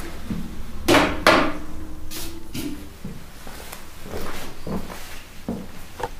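A steel handpan being handled and set down on a stand. Two louder knocks against the shell about a second in leave a note ringing for over a second, then a few softer bumps follow.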